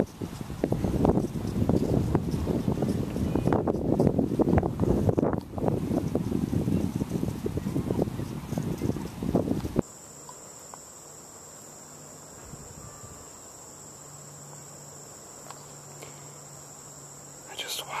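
Wind buffeting the camera microphone, stopping abruptly about ten seconds in. After that, a quieter, steady high-pitched chorus of insects such as crickets.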